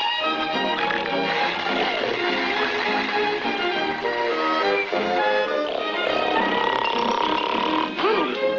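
Orchestral cartoon score led by bowed strings, with a long held high note in the last couple of seconds.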